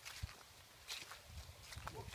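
Faint footsteps on a path strewn with dry fallen leaves, a few soft thuds with leaf rustling.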